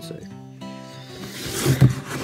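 Background music with held notes, then near the end a short, loud rustling thump as a cardboard shipping box is lifted up close to the microphone.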